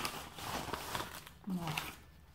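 Paper envelope and its contents rustling and crinkling as they are handled, followed about a second and a half in by a brief voiced sound from a woman.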